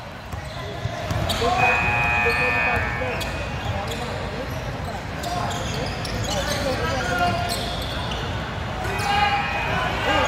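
Basketball being dribbled on a hardwood gym court, sharp bounces echoing in a large hall, with people shouting and talking in the background.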